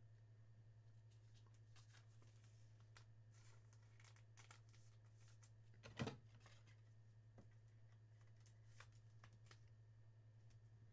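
Near silence over a steady low electrical hum, with faint rustles and ticks of a trading card being handled in a plastic holder and one sharper click about six seconds in.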